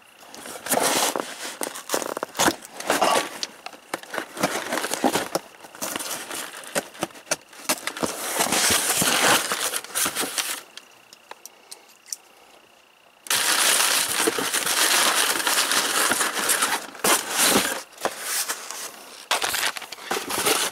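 Cardboard shipping box being cut with a pocket knife and pulled open by hand: crackling, tearing and rustling of cardboard with many sharp clicks, broken by a quieter pause of a couple of seconds a little past halfway.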